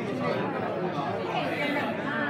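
Several people talking over one another: overlapping voices in a chattering group.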